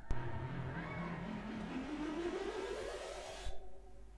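A recorded sound effect played through the hall's speakers: an engine-like whine that starts suddenly and sweeps steadily up in pitch for about three and a half seconds, then cuts off abruptly.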